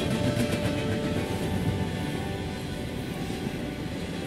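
Background music over the steady rumble of a moving train.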